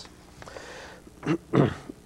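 A man clears his throat in two short, gruff bursts a little past the middle, after a faint intake of breath.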